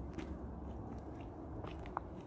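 Faint crunching footsteps on a gritty stone path, over a low steady rumble.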